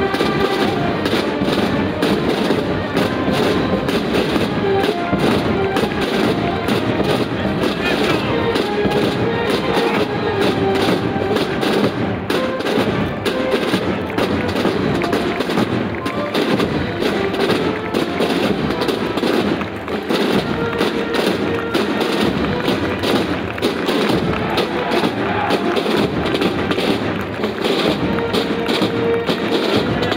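Military march music with drums, playing steadily.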